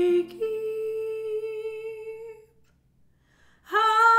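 A woman's voice holding one long wordless note over a ringing classical guitar chord. The note fades out about two and a half seconds in, and after a short pause she comes in loudly on a new note near the end.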